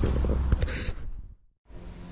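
Camera handling noise and low rumble, with a brief hiss about half a second in, cut off by a moment of dead silence at an edit, then a quieter steady hum.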